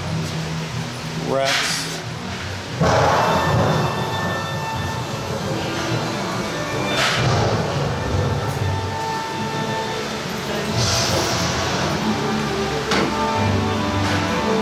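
Dark ride show audio: the ride's orchestral soundtrack, with voices and sound effects over it. A rising whoosh comes about a second and a half in, and the sound jumps suddenly louder near three seconds.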